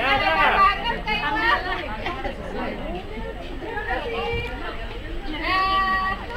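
A group of young children's voices chattering and calling out over each other, with one longer, high call near the end.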